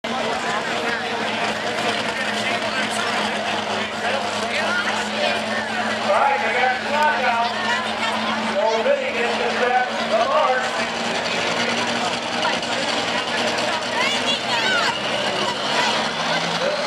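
Pulling tractor's engine running steadily at low speed while the tractor takes up the sled before a pull, with a voice talking over it.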